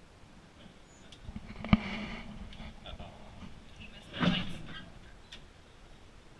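Brief indistinct voices, with a single sharp knock a little under two seconds in.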